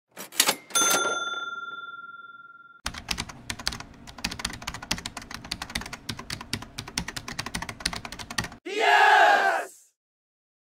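Intro sound effects: a couple of quick clicks and a bell-like ding that rings out for about two seconds, then rapid typewriter key clicks for about six seconds, and a short voiced cry near the end.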